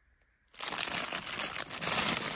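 Clear plastic bags crinkling and rustling as a hand rummages through a box of bagged action figures, starting suddenly about half a second in.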